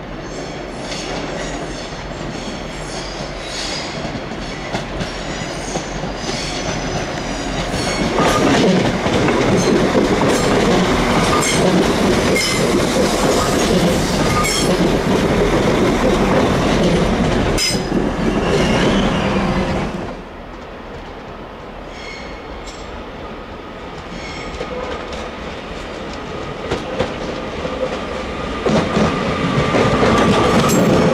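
Trains running slowly over station pointwork: a loud rumble with wheel clicks over rail joints and faint wheel squeals, which cuts off suddenly about two-thirds of the way in. A Northern Class 331 electric multiple unit then comes on over the points, quieter at first and growing louder near the end.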